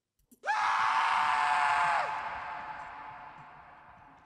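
A woman's scream as a horror-film ghost's shriek: it rises at the start, is held steady for about a second and a half, then drops in pitch and fades away in a long echo.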